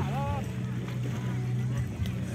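Boat engine running steadily with a low drone, heard from on board.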